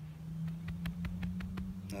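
Gloved hands working loose garden soil around a transplanted tomato plant, with a few light, scattered clicks. A steady low hum runs underneath.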